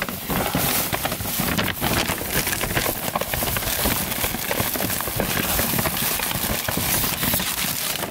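Plastic shopping bag rustling and crinkling continuously as packs of baby wipes are dug out of it.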